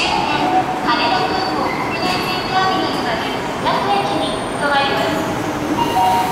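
Keikyu commuter train rolling slowly into the platform and coming to a stop, with rail and brake noise under the sound of voices.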